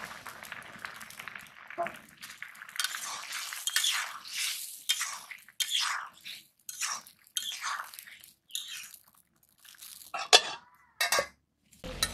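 A metal spatula stirs and scrapes a curry in a metal kadai in a run of short swishing strokes. Near the end come two sharp metal clanks against the pan, the first the loudest.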